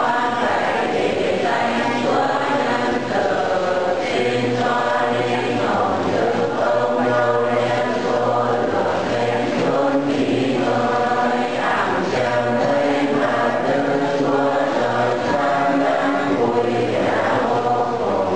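A group of voices chanting a slow funeral hymn together, in long held notes.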